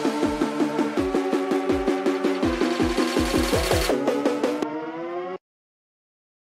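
The end of an electronic future-bass track: sustained synth chords over a run of deep kick drums that stops about four seconds in. The chords carry on, duller, and the track cuts off suddenly into silence about five seconds in.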